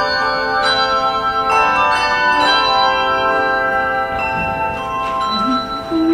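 Handbell choir playing: several chords struck in turn, each set of bells ringing on and overlapping the next.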